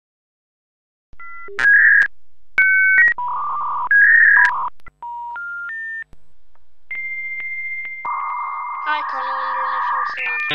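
A collage of telephone-line sounds: short electronic tones and bursts of buzzing screech, a three-note rising tone, then a steady high tone giving way to modem-like handshake noise.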